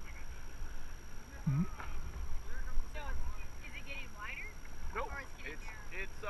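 Indistinct, faint chatter of several people in a raft, with a steady low rumble underneath.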